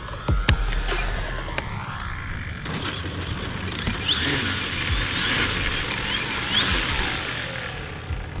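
Electronic music with a drum beat cuts off about one and a half seconds in. It gives way to outdoor hiss and the electric motor of a Flex Innovations Mamba 10 RC biplane as it taxis on grass. The motor whine rises briefly a few times.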